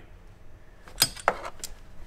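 A few light metallic clicks and clinks from hand tools and small parts under a car hood: one sharp click about a second in, then two or three fainter ones.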